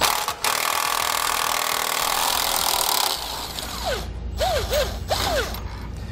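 Milwaukee cordless power tool driving a socket to back out a rusty trailer brake backing-plate bolt. It runs continuously for about three seconds, then in shorter, uneven bursts with a few squeaky chirps.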